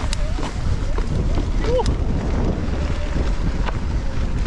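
Wind buffeting the helmet-mounted camera's microphone as a steady low rumble, with scattered clicks and knocks from the mountain bike rolling over a rocky trail.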